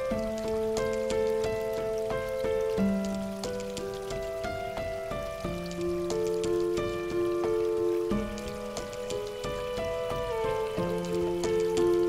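Calm background music of slow, held chords that change every second or two, over a light steady patter of water drops.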